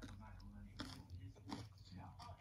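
Quiet mouth sounds of someone eating off a spoon, chewing and licking, with a couple of soft lip-smack clicks. Faint speech can be heard in the background.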